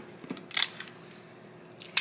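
Gift-wrapping materials being handled: two short crinkling, tearing noises, one about half a second in and a sharper one near the end.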